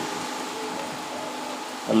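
Steady background whirr and hiss with a faint constant tone under it, in a pause between recited lines. A man's voice starts right at the end.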